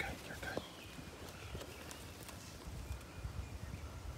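Faint birdsong, a few thin chirps and whistles, over a low steady rumble.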